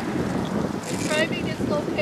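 Wind buffeting an outdoor microphone, a steady low rumble under a woman's voice, which speaks briefly about a second in.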